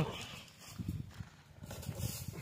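Hooves of a young Hallikar bull calf stepping on dry dirt and straw: a few soft, irregular footfalls.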